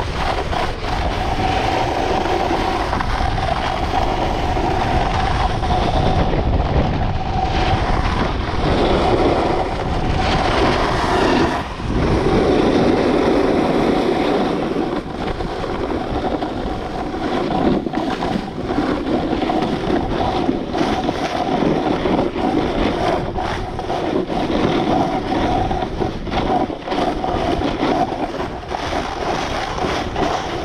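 Wind rushing over an action camera's microphone together with skis hissing and scraping over snow during a fast downhill run, with irregular rough patches.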